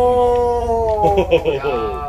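A man's voice holding one long drawn-out vocal cry for about a second and a half, dropping slightly in pitch at the end, followed by a shorter, higher vocal sound near the end.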